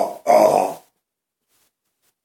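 A man's voice giving one more voiced "uh-huh", ending within the first second, then near silence: room tone.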